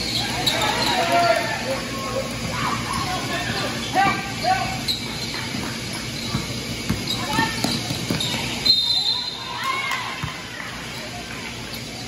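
Basketball game on a hardwood court: a ball bouncing, players and spectators shouting, and a short, high referee's whistle about nine seconds in.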